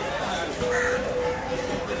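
A crow caws once, about a second in, over a steady background of voices and activity.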